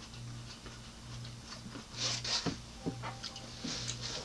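Mouth chewing a seedless grape with the lips closed: a short wet smack about halfway through, then a few soft clicks about half a second apart. A low hum pulses on and off underneath.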